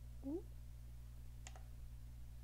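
A single computer mouse click about one and a half seconds in, over a steady low electrical hum.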